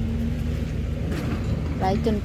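An engine running steadily with a low, even throb.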